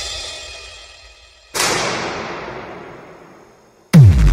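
Background music fading out, then a single cymbal crash about one and a half seconds in that rings and slowly dies away. A new song starts loudly right at the end.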